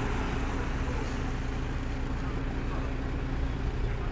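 Steady low rumble and hiss of outdoor street noise, without change.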